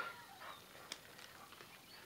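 Near silence: quiet room tone, with one faint click about a second in.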